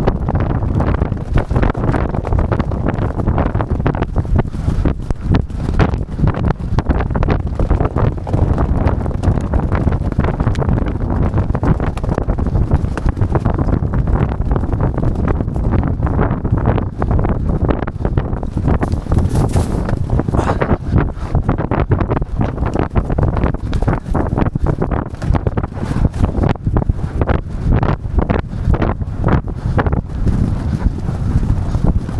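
Loud, steady wind buffeting on the microphone of a camera carried by a jockey on a galloping racehorse, with the horse's hoofbeats on turf underneath.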